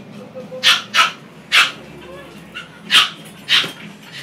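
A dog barking, five short sharp barks at uneven intervals.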